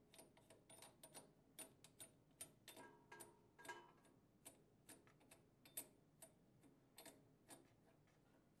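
Faint, irregular clicking, about three clicks a second, as a mounting nut is turned by hand up a dispenser's threaded brass shank.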